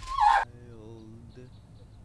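A woman's short, high-pitched squeal of delight that dips in pitch and cuts off abruptly about half a second in. It is followed by a quieter steady low hum with faint chirps.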